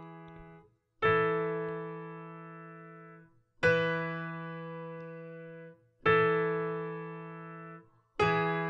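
Virtual piano playing three slow chords, each held for about two seconds over a sustained low E bass note and then released, so the sound cuts off abruptly. The last chord of the previous phrase dies away just after the start.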